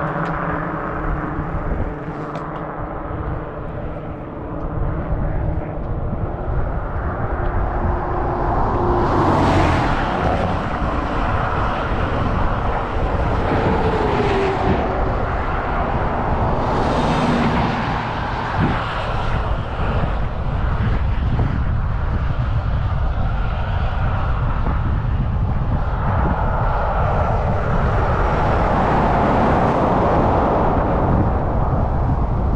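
Wind and road noise from riding a bicycle along a highway, with motor vehicles going by: low engine tones near the start and two louder swells about nine and seventeen seconds in.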